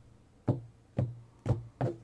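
Four short knocks about half a second apart, each with a brief low thud, as a tarot deck is handled on the table and a card is laid down.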